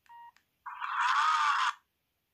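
Mini Chinese Range Rover-styled mobile phone: a short key-press beep, then about half a second later a louder, noisy sound effect about a second long from the phone's speaker, with a tone in it that rises and falls, as the menu screen changes.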